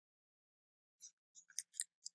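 Near silence broken by four or five faint, short clicks in the second half: keystrokes on a computer keyboard.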